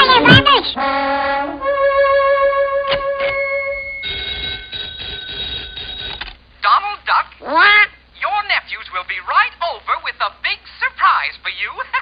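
Cartoon soundtrack: a moment of quacking cartoon-duck voice, then held musical tones for several seconds with a single click in the middle. From about halfway on comes a long run of fast, garbled duck-voice chatter.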